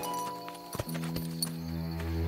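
Background music score with held notes, and a few horse hoof clops a little under a second in and again shortly after.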